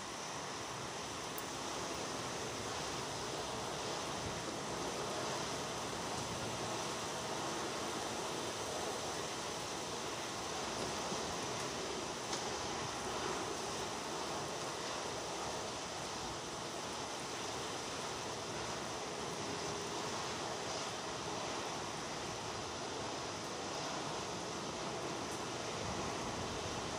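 Steady rain falling, an even hiss with no separate drops or other events standing out.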